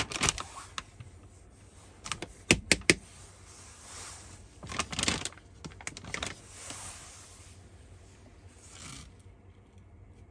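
Scattered sharp clicks and taps with short soft hisses between them, the loudest clicks coming about two and a half to three seconds in: a container of black iron oxide powder being handled and shaken to sprinkle the powder into a glass of water.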